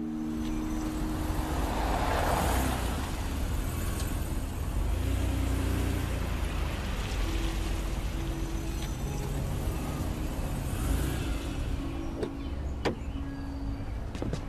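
An SUV driving up and pulling to a stop: low engine rumble with tyre noise that swells and fades. A few sharp clicks near the end as a car door is handled.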